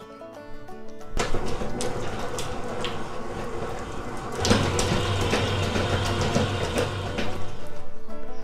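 Hamilton Beach eclectrics stand mixer starting up about a second in and running steadily, its beater whipping pork lard in a steel bowl; about halfway through the sound turns deeper and heavier.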